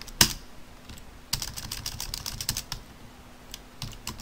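Typing on a computer keyboard: one sharp keystroke at the start, a quick run of keystrokes about a second in, and a few scattered keystrokes near the end.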